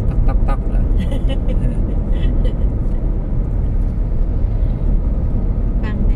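Steady low rumble of road and engine noise inside a moving car's cabin while cruising on an open highway.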